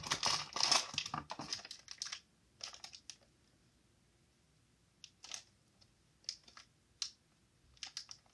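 Plastic toy packaging crinkling and rustling as it is handled, dense for the first two seconds, then a few short separate crinkles.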